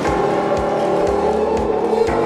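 Instrumental band music from the song's soundtrack: sustained chords over a steady low drum beat.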